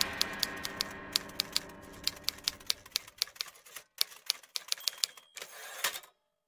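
Manual typewriter keys clacking out a line in an irregular rhythm. It ends with a short rasp and a final loud clack near the end, over the last fading tail of the trailer's music.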